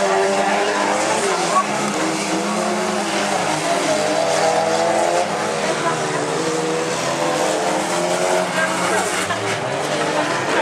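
Race car engines revving up and down as cars power around a dirt autocross track.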